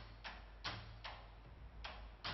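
A computer mouse clicking: three quick clicks about 0.4 s apart, a short pause, then one more near the end.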